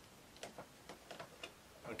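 A handful of faint, sharp clicks, about five spread over a second, from handling a plastic sixth-scale action figure as its arm is moved.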